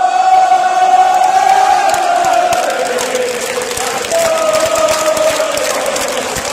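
A large crowd of football fans singing a chant together in long held notes.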